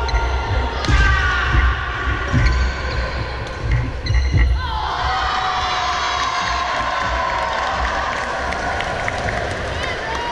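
A badminton rally on a sports-hall court: several sharp racket hits on the shuttlecock and footfalls in the first half, and trainers squeaking on the floor, with longer squeals in the second half, all in the reverberation of a large hall.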